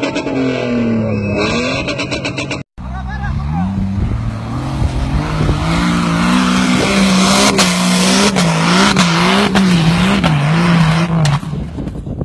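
Music for the first few seconds, then a sudden cut to an off-road 4x4's engine revving hard under load on a steep dirt climb. Its pitch rises, then holds high and wavers up and down for several seconds before dropping away near the end, with voices of onlookers.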